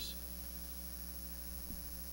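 Steady low electrical mains hum, a constant drone of evenly spaced low tones, with a faint tick near the end.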